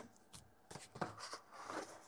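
Fingers handling a small cardboard box as its seal sticker is peeled off: a few faint, short rustles and scrapes of paper and card.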